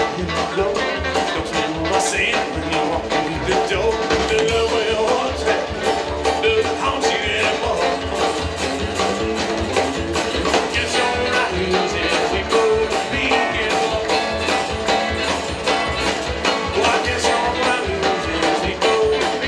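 Live country band playing an upbeat tune with a steady beat: Telecaster electric guitar, acoustic guitar, upright bass and drums.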